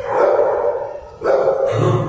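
Dog barking twice, two loud barks about a second apart; the dogs are excited.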